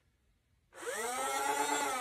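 Flywheel motors of a Buzz Bee Alpha Auto 72 foam dart blaster revving up on a first pull of its two-stage trigger, starting about a second in. The whine climbs quickly in pitch, then slowly sinks, with no darts fired.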